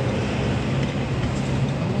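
Steady engine drone and road noise of a moving vehicle, heard from inside a car's cabin.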